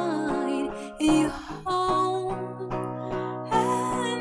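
Live acoustic music: a woman singing a slow ballad into a microphone over strummed acoustic guitar, held notes moving from one pitch to the next with short breaks between phrases.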